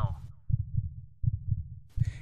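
Heartbeat sound effect: three low, muffled thumps about 0.7 s apart.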